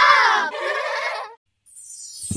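Children's voices calling out in a channel-logo sting, the last call trailing off about a second in. After a brief gap, a rising swoosh starts near the end.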